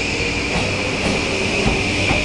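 JR Kyushu 821 series electric multiple unit pulling out of the station and running past close by: steady running noise of the wheels on the rails, with a steady high-pitched ring and a faint motor whine.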